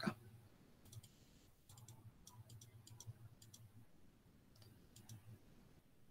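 Faint, scattered clicking at a computer, a few clicks at a time, as notebook cells are re-run one after another; otherwise near silence.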